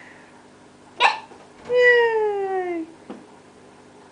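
A young child's wordless vocal sound: a short breathy burst, then one drawn-out vowel of about a second that slides gradually down in pitch, followed by a faint tap.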